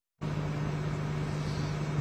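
The sound drops out completely for a moment at the very start. Then comes steady background noise with a constant low hum, the outdoor drone of the live location.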